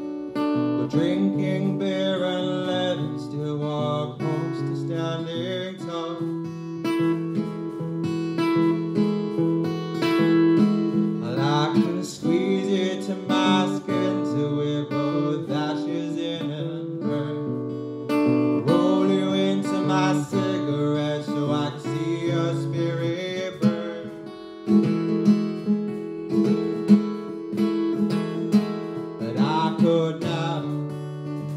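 Acoustic guitar strummed live, with a man singing along through a PA system.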